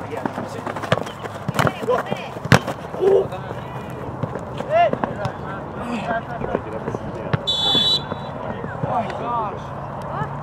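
Youth soccer match sounds: distant shouts of players and spectators, a few sharp ball kicks in the first seconds, and a short blast of a referee's whistle about seven and a half seconds in, stopping play for a foul.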